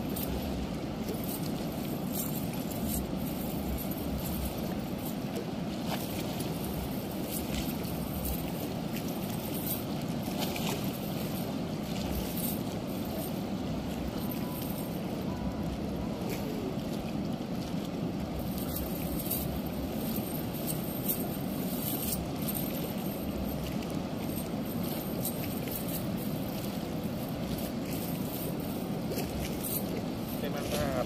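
Steady low rushing noise throughout, with light scattered clinks of the cast net's chain weights as fish are picked out of the mesh.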